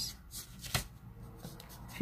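Blue felt-tip marker writing on paper: soft scratchy strokes, with a sharp click from the tip about three quarters of a second in.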